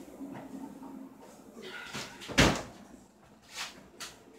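A single loud thump about two and a half seconds in, then a softer knock about a second later.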